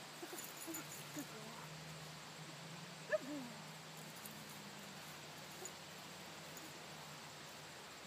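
A German Shepherd dog giving a few short, high whines, the loudest one about three seconds in.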